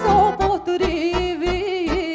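Romanian Banat folk band playing a lively instrumental passage: an ornamented lead melody over a steady quick oom-pah backing of accordion, keyboard and bass.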